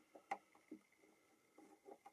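Near silence with a few faint, short clicks of a metal tool working at a guitar fret.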